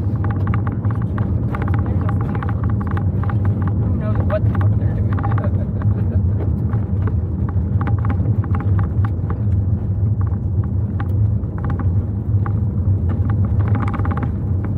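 Car driving, heard from inside the cabin: a steady low rumble of engine and road noise, with many light, irregular clicks and rattles over it.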